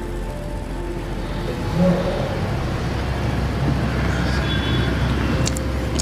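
Steady hum of road traffic, with faint music underneath.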